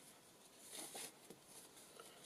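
Near silence, with faint brief rustles of paper journal pages being turned by hand, about a second in.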